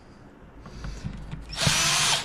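Cordless drill/driver running in one short burst about one and a half seconds in, driving a screw into a plastic speaker pod. Before it there are only faint handling sounds.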